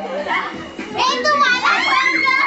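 Girls' voices shouting and chattering as they play, high-pitched, with no clear words. The voices are softer early on and turn loud and shrill from about a second in.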